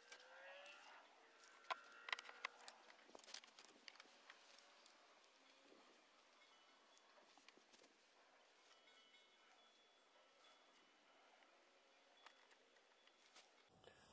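Near silence, with a few faint taps in the first few seconds as thin wooden strips and a yoga-mat gasket are handled and set on a plastic panel.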